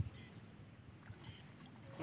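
Faint sloshing of legs and hands moving in shallow muddy water, with a sharp click at the very start, over a steady high-pitched hiss.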